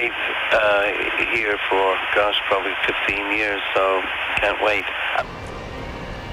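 A voice speaking, thin and cut off at top and bottom as over a phone line or radio, ending about five seconds in; a low steady background noise is left after it.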